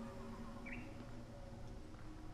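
Faint woodland ambience: insects buzzing over a low steady hum, with one short bird chirp just under a second in.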